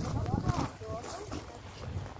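Several people's voices talking indistinctly in the background, heard mainly in the first second, over a low rumble of wind on the microphone.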